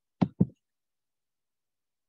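Two quick computer-mouse clicks, about a fifth of a second apart, near the start, clicking to turn the page of an on-screen e-book.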